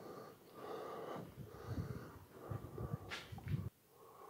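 Faint footsteps and breathing of the person carrying the camera as he walks across the room, with a short click about three seconds in.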